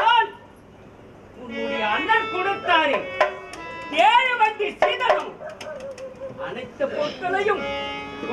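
A man's loud, pitch-swooping stage voice, starting after a brief lull about a second and a half in, over steady held instrumental tones and drum strokes of the folk-theatre accompaniment.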